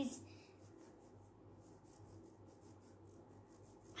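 Faint, repeated soft strokes of a small applicator stick rubbing a wet turmeric and hand-sanitizer mixture across paper, over a low steady hum.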